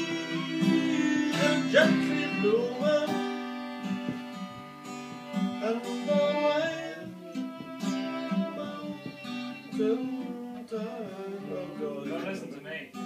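Acoustic guitar strummed with a fiddle playing along, and a man singing over it: a folk song played live.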